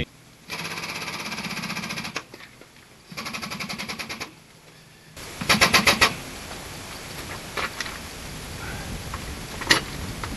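Pneumatic impact wrench working the wheel nuts on a Caterpillar 637 scraper wheel, in three bursts. The third burst, about five seconds in, is the loudest, with rapid hammering. A fainter steady noise carries on after it.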